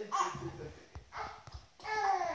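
A baby making a few short, high squealing babbles, with low bumps and rustling of the blanket in between.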